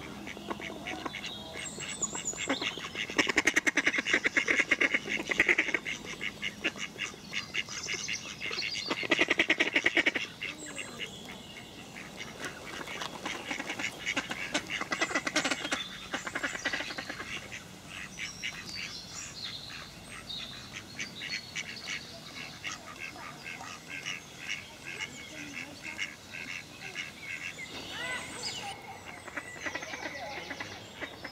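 Ducks quacking in loud, rapid runs about three seconds in and again near ten seconds, with quieter quacking through the rest and small birds chirping high above it.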